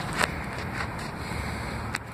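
Steady low hiss with two short metallic clicks, one near the start and one near the end: tool-handling noise as a wrench is fitted onto the socket on an exhaust O2 sensor.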